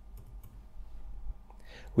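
A few faint computer keyboard keystrokes, short clicks in the first half second, as a new line is added in a code editor.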